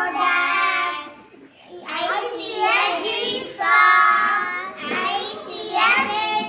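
Four young girls singing a children's song together in long held notes, with a short pause about a second in.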